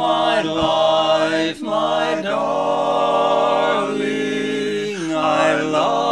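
Barbershop quartet of four men singing a love song a cappella in four-part close harmony, with long held chords that slide into new chords every second or two.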